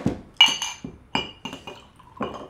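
Glass clinking against glass: a few sharp clinks, each with a short high ring, the loudest about half a second in.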